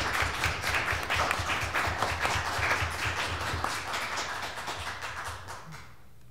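Audience applauding with many overlapping claps, fading away near the end.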